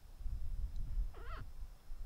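A single short animal call, rising and wavering, about a second in, over a low rumble.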